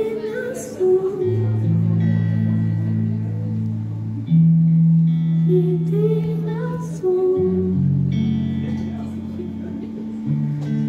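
Live music: a woman sings a slow, wavering melody into a microphone over an electric guitar and long held low chords that change every couple of seconds.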